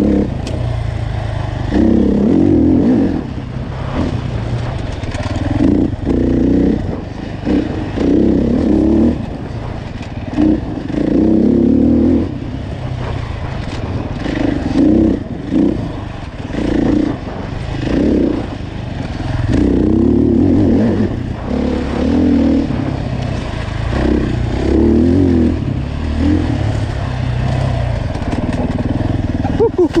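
Dirt bike engine riding a trail, the throttle opening and closing over and over so that the engine revs up and drops back every couple of seconds.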